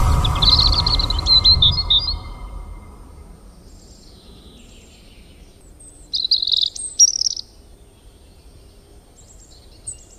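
Small birds chirping in two short bursts, one in the first two seconds and another about six to seven and a half seconds in. Under the first burst is a low rumble that fades away over the first two to three seconds.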